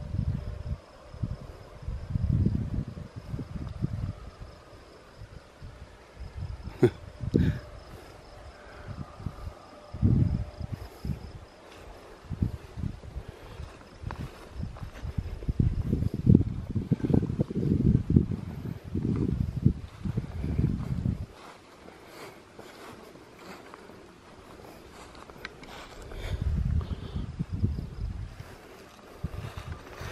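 Low, uneven rumbling of footsteps and handling noise on a handheld camera carried across grass, in clusters that come and go and are heaviest past the middle. A faint steady insect drone sits behind it in the first third.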